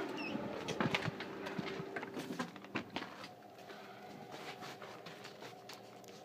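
Footsteps and scattered knocks of a person walking out through a doorway, loudest in the first three seconds, over a faint steady hum that fades away.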